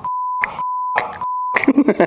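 A steady single-pitch censor bleep laid over speech, broken a few times by short bursts of laughter, cutting off about one and a half seconds in, followed by laughing voices.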